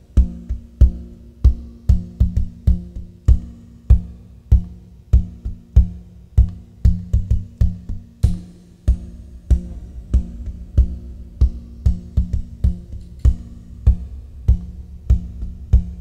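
Acoustic guitar playing a looped groove through a loop pedal: a steady beat of sharp low knocks a little over half a second apart, with lighter hits between, over sustained low guitar notes.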